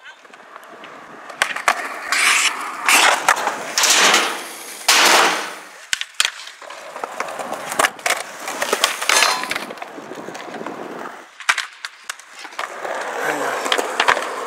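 Skateboard wheels rolling on concrete, the rolling swelling and fading several times, with a series of sharp clacks from the board.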